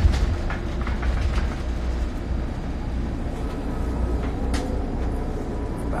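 Steady low rumble of a bus, heard from inside its cabin, with a few faint knocks.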